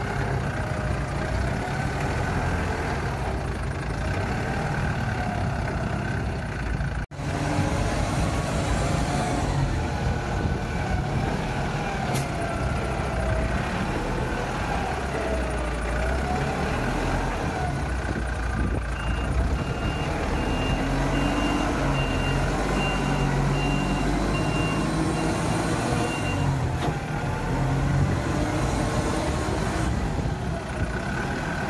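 Kaystar Pioneer45 4.5-ton four-wheel-drive all-terrain forklift running steadily while driving over rough ground, its pitch wavering up and down. A reversing alarm beeps in a steady series for several seconds past the middle, and there is a brief dropout about a quarter of the way in.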